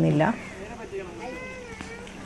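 A woman's voice finishing a sentence at the very start, then quiet background with a faint, drawn-out, high voice rising and falling about halfway through.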